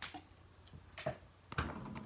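Drinking from a plastic water bottle: a few faint clicks and gulps, with a soft knock about a second and a half in.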